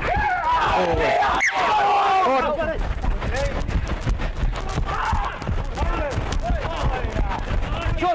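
Rugby players shouting short calls to one another across the field, over a steady low rumble, with one sharp crack about a second and a half in.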